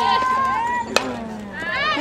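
A single sharp crack of a softball bat hitting the pitched ball, about a second in, amid voices calling out from the sideline.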